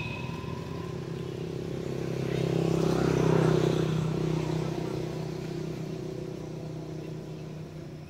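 A motor vehicle's engine going by unseen, its sound swelling to a peak about three seconds in and then fading away.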